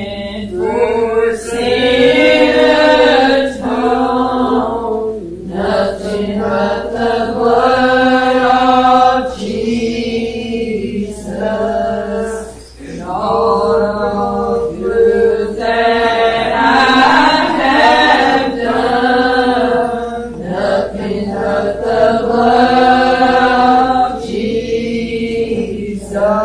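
A church congregation singing a hymn together, in phrases of long held notes.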